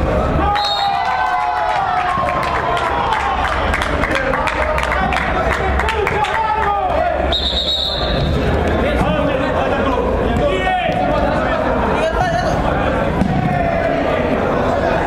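Players and spectators shouting across a reverberant indoor five-a-side hall, with a few sharp knocks of the ball being kicked. A brief high referee's whistle sounds about seven seconds in.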